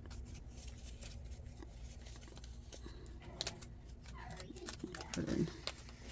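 Faint rustling and soft clicks of paper dollar bills being handled and slid into plastic binder pocket sleeves, over a low steady room hum.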